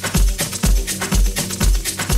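Electronic dance music from a DJ mix: a steady four-on-the-floor kick drum at about two beats a second, with hi-hats on the off-beats.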